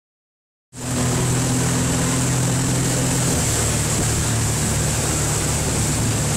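Motorboat engine running steadily while towing at speed, over the rush of water from the wake and wind on the microphone; the sound cuts in abruptly less than a second in.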